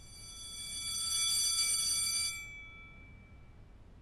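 A high, steady ringing tone made of several pure notes sounding together. It swells in, then fades out over about three seconds, with the lowest notes lasting longest.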